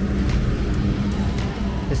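Bus engine running close by as the bus pulls away, a steady low hum, with music playing in the background.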